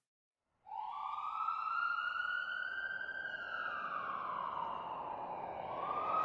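Emergency vehicle siren wailing. It starts less than a second in, slowly rises in pitch, falls, and begins to rise again near the end.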